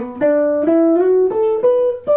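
Hollow-body archtop electric guitar, played clean, picking a jazz line of about five single notes that step upward in pitch, each lasting roughly a third of a second.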